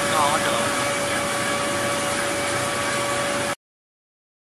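Rice husk pellet mill running: a steady, loud mechanical din with a constant whine through it. It cuts off suddenly near the end.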